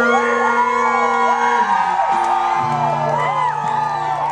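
A live band's held closing chord ringing out under an audience whooping, whistling and cheering. About halfway through, the sustained chord gives way to a new held chord with a low bass note.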